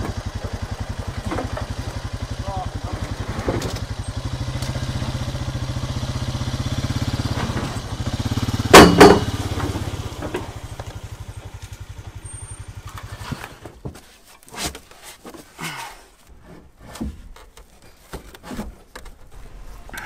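A small engine running steadily at idle, which shuts off about two-thirds of the way through. A loud clatter of something being handled about nine seconds in, then scattered lighter knocks.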